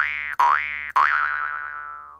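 Cartoon 'boing' sound effect, three twangs about half a second apart, each with a quick upward sweep. The last one rings on, wavering as it fades out.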